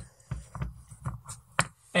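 A smoke stopper's XT60 plug being pushed onto a quadcopter's XT60 connector, with a few small plastic clicks and knocks from the connectors and hands. The two sharpest clicks come in the second half.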